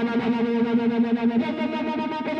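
Distorted electric guitar played live through effects, holding sustained notes that pulse rapidly, moving to a different note about one and a half seconds in.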